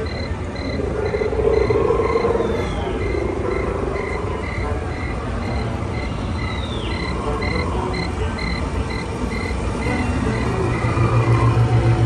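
Bayou soundscape of frogs croaking and insects chirping in a steady pulse about two to three times a second, with a few falling chirps over a low steady rumble. Near the end a louder, pulsing low hum comes in.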